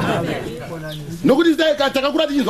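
Men's voices talking, with a brief low steady held note in the middle.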